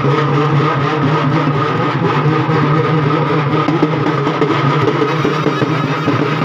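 Procession drum band playing: barrel drums beaten in a dense, continuous rhythm over a steady drone.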